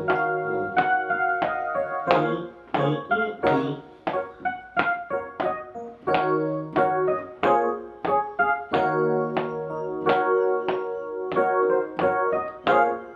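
Digital piano played with both hands: chords struck in a steady rhythm, each note fading away, over bass notes held for about a second at a time.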